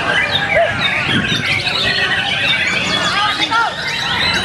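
White-rumped shamas (murai batu) singing: many birds' fast whistles, chirps and trills overlap densely, over a low murmur of voices.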